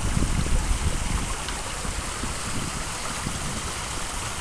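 Backyard koi pond's waterfall splashing: a steady rush of falling water, with a low rumble underneath.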